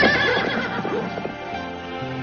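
Horse sound effect: a whinny at the start, followed by galloping hoofbeats, standing for an army on horseback in pursuit. Music with held notes takes over after about a second and a half.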